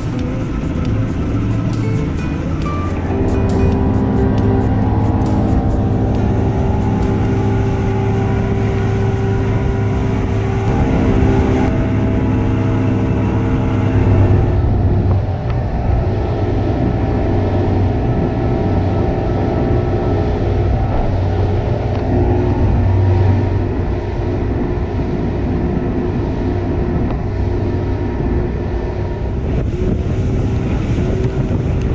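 A boat's engine running steadily under way, with background jazz music playing over it.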